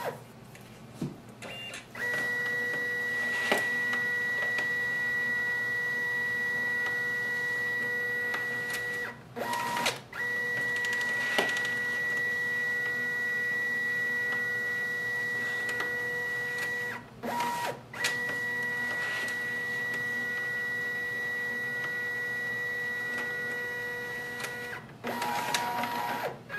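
Brother MFC-J1010DW's automatic document feeder scanning three pages one after another: after a few startup clicks, three runs of about seven seconds each of steady motor whine, one per page, separated by short pauses with brief clicks as the next sheet is picked up.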